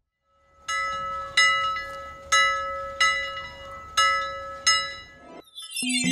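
Six bright bell-like chime strikes, about one every three quarters of a second, each ringing and fading over a low held tone. Near the end a falling whoosh leads into music.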